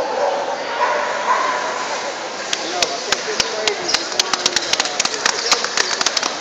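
Spectator chatter, then from about two and a half seconds in, a run of close, sharp hand claps at about three a second as the dogs are gaited around the ring.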